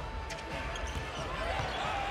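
A basketball dribbling on a hardwood court over the steady murmur of an arena crowd, with a few short squeaks near the end.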